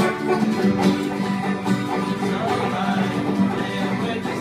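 Banjo and two acoustic guitars playing a bluegrass tune together, the banjo picked over strummed guitar chords at a steady beat.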